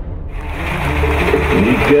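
Background music fades out and gives way to a truck engine's steady low rumble. Men's voices come in over the engine near the end.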